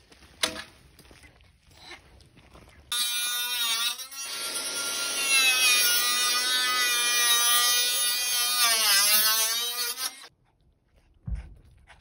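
Power saw cutting a clear corrugated plastic panel: the motor spins up about three seconds in, runs steadily through the cut for about six seconds, then winds down and stops about ten seconds in. A short knock comes about half a second in.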